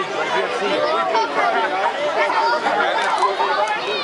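A crowd of people chattering, many voices overlapping with no single voice clear.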